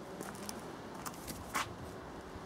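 Low, steady background noise with a few faint short ticks, the clearest about a second and a half in.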